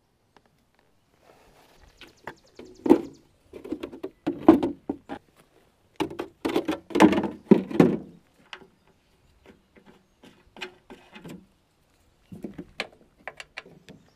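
Irregular knocks and clunks of hands and parts working on a steel finish-mower deck, coming in several clusters with short quiet gaps between.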